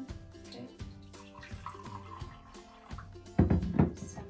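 Water poured from a glass jug into a drinking glass, under background music, with a brief louder clatter near the end.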